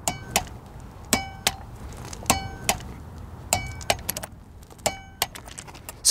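Click-type lug torque wrench, set to 100 foot-pounds, clicking as the lug nuts reach the set torque: five sharp double clicks with a short metallic ring, a little over a second apart.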